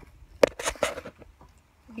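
A single sharp knock about half a second in, followed by brief crunching and rustling of footsteps through dry leaf litter.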